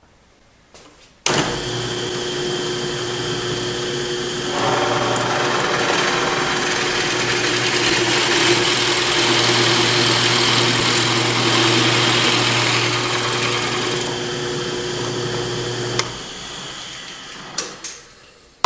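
A drill press starts about a second in and runs steadily. From about four seconds in, its Forstner bit cuts an angled hole into a plywood block, and the cutting noise grows denser and louder. The motor cuts off about two seconds before the end, and a couple of clicks follow.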